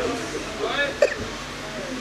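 A man's voice making a few short, broken sounds with no words, with a sharp click about a second in.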